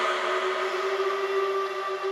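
Electronic dance music: a held synth drone, one steady chord of several pitches, slowly fading.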